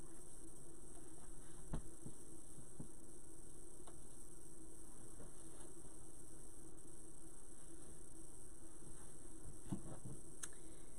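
Steady electrical hum with a high hiss underneath, with a few faint clicks and rustles as ribbon and deco mesh on a wreath are handled.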